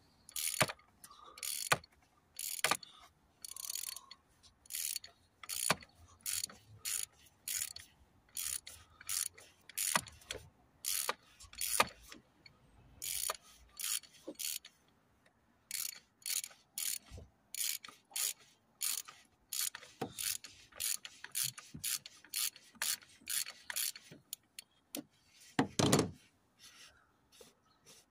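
Ratchet wrench on a 27 mm socket clicking in short runs about every half second as it is swung back and forth, unscrewing the oil filter housing cap on a 1.6 HDi diesel engine, with a few pauses and a longer run of clicks near the end.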